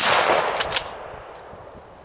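A single gunshot from a hunting long gun: a sharp crack, then a long echoing tail that dies away over about a second and a half.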